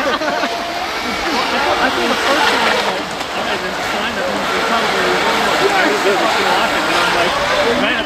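Shallow river rushing steadily over rocks, with people's voices talking over it.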